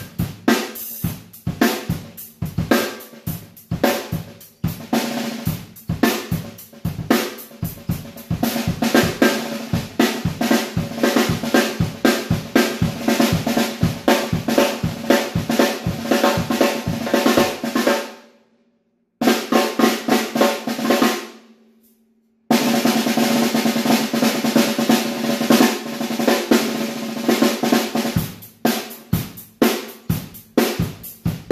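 Premier Olympic 14-inch chrome-over-steel snare drum played with wooden sticks in rapid strokes and rolls, with a Vater Buzzkill pad on the head cutting the overtones and dropping the pitch slightly. The playing breaks off twice, briefly, about two-thirds of the way through.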